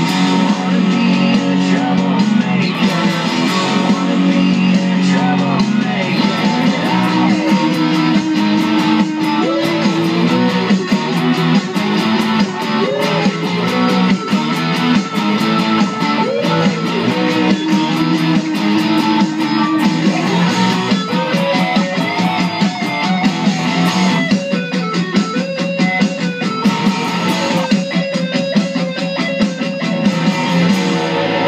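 Rock music with drums and an Epiphone Les Paul electric guitar strummed in steady chords, with a pitch-bending melody line over it for much of the passage.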